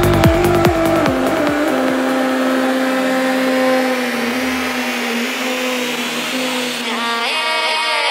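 Psytrance: the kick drum and rolling bassline drop out about a second and a half in, leaving a breakdown of held synth tones under a rising noise sweep. A fast synth arpeggio comes in near the end.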